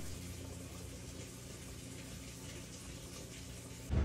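Electric potter's wheel turning slowly with a low steady hum. There are faint wet sounds of a spoon spreading liquid clay slip across the spinning plate.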